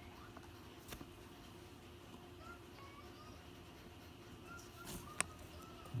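Quiet background: a low steady hum with a couple of faint light clicks and a few faint short high chirps in the second half.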